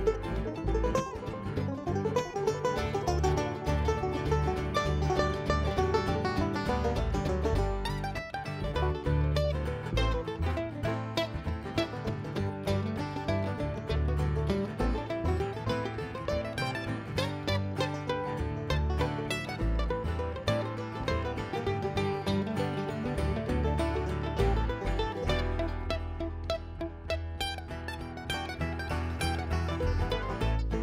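Live bluegrass band playing an instrumental break between sung verses: banjo and mandolin picking over acoustic guitar and upright bass.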